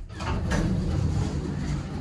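Elevator doors sliding open on arrival, letting in a steady outdoor rumble of wind and ambient noise.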